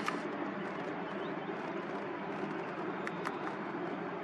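Steady outdoor background hum with two faint ticks a little over three seconds in.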